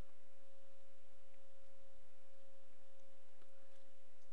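A steady electronic tone: one pure, unchanging pitch over a faint hiss.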